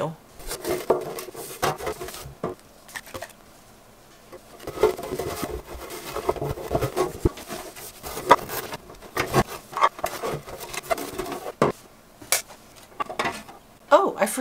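A clear acrylic storage drawer being handled and wiped out with a waffle-weave cloth: irregular light knocks and clatters of the hard plastic, with cloth rubbing against it.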